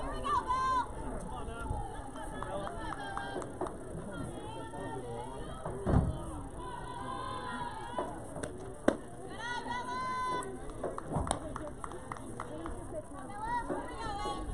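Girls' voices calling and chanting in sing-song fashion across a softball field during an at-bat. A single sharp knock comes a little before nine seconds in.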